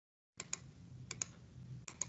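Faint clicks of computer input as digits are keyed into an on-screen TI-84 Plus calculator emulator: three keystrokes about two-thirds of a second apart, each a quick double tick.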